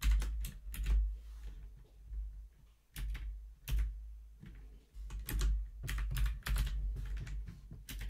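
Typing on a computer keyboard in bursts: a few keystrokes at the start, a couple around three seconds in, and a quicker run of keystrokes from about five seconds in.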